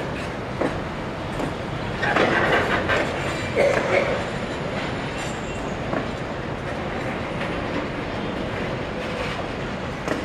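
Loaded container flat wagons of a freight train rolling past close by, their wheels clicking over the rail joints above a steady rumble. The sound gets louder for a stretch about two to four seconds in.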